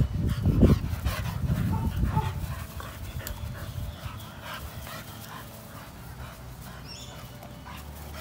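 Staffordshire bull terriers at play, making short dog sounds. A loud low rumble fills the first two seconds, and then it goes quieter.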